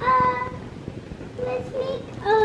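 A young boy's voice singing a long held note without words, then a shorter held note about a second and a half in.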